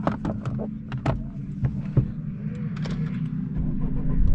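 Honda Civic FK8 Type R's 2.0-litre turbocharged four-cylinder idling, heard from inside the cabin, with several sharp clicks as the gear lever is worked; the low rumble grows a little near the end.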